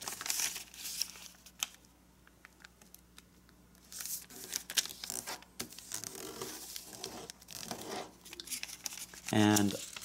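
Sheet of origami paper being folded and creased by hand: crinkling and crackling paper, with a quieter pause about two seconds in before the crinkling resumes.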